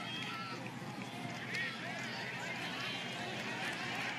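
Steady stadium sound of a live football play: a murmur of spectators and distant players' voices and shouts from the field, with no single loud event.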